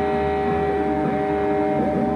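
A live instrumental quartet of synthesizer, electric guitars, double bass and drums playing a drone-like passage. Several steady tones are held over low bass notes.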